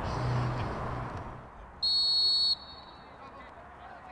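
Referee's whistle: one short, loud, steady blast a little under a second long, about two seconds in, blown to start play, after a second or so of outdoor background noise.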